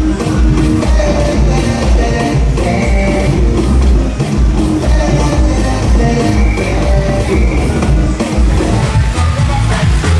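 Loud music with a heavy bass beat, with a change in the mix near the end.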